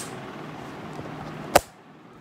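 Handling noise from the recording phone being picked up: a brief click at the start, then one sharp knock about one and a half seconds in, over low steady room noise.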